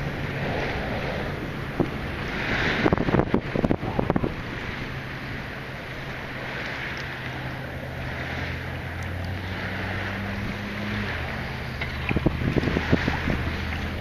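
Wind buffeting the microphone over water lapping and sloshing around a person wading in shallow bay water, with a steady low hum underneath. A few knocks and splashes come about three seconds in and again near the end.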